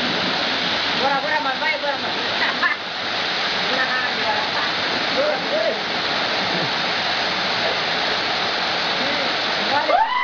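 Waterfall pouring into a plunge pool: a steady, even rush of falling water, with voices calling faintly over it at times in the first half.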